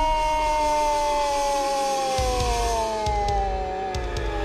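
A long, high-pitched scream from a cartoon goose character, held on one note and slowly sinking in pitch. Low rumbling joins in about two seconds in.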